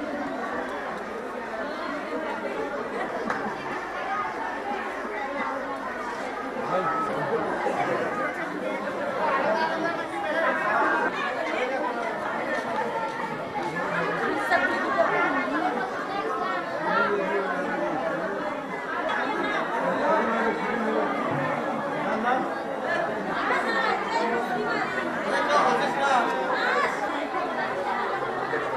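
Chatter of many people talking at once in a large, crowded workroom full of bidi rollers; no single voice stands out.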